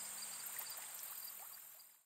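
Faint outdoor ambience with a steady high-pitched insect chorus and a few faint short chirps, fading out to silence at the end.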